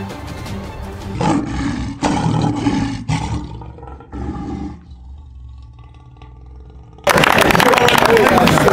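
Lion roaring: three loud roars in a row over background music, the last trailing away. About a second before the end, the sound switches abruptly to people talking.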